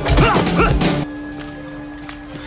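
Movie fight-scene audio: short yelps and yells with sharp hits over the orchestral score for about a second, then the hits and yells stop suddenly and only quieter, steady score goes on.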